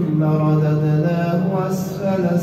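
A man's voice chanting Quranic recitation in the melodic tajweed style, holding one long, slightly wavering note that ends in a short hissing consonant near the end.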